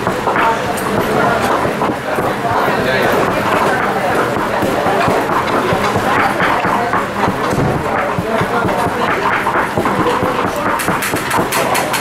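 Several people talking at once in a room, no one voice standing out, while they prepare food; near the end comes a quick run of sharp knocks from kitchen work on the ingredients.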